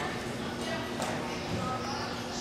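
Indistinct voices talking in the background over a steady low hum, with a single sharp knock about a second in.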